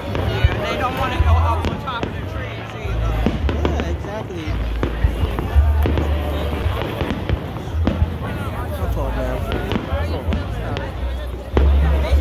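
Fireworks going off in the distance, a few sharp bangs and pops, over the voices of a large crowd and music.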